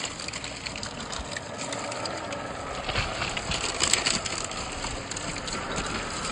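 1/10-scale Traxxas TRX-4 RC crawler driving over loose rocks: stones crunching and clattering under the tyres over a faint steady whine from its electric motor and gears, with sharper knocks about three and four seconds in.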